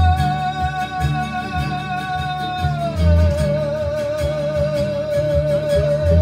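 Live band music: a singer holds one long note with vibrato, stepping down to a lower held note about halfway through, over electric bass and acoustic guitar.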